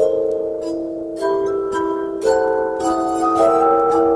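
Glass harp, a set of crystal glasses rubbed on the rim, playing a slow tune in sustained, overlapping ringing notes, with a new chord coming in about every second.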